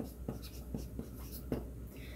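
Chalk writing on a chalkboard: a few faint, short taps and scratches as the characters are formed.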